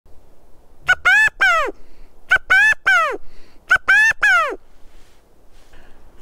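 Hand-blown quail call sounding three identical three-note calls about a second and a half apart, each a short note followed by two longer notes that arch up and fall away, in the pattern of the California (valley) quail's "chi-ca-go" call.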